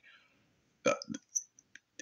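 A few short mouth noises from a man pausing between sentences: a smack about a second in, then a few small clicks.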